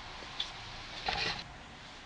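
Quiet room background hiss, with a faint click about half a second in and a brief soft noise around one second in.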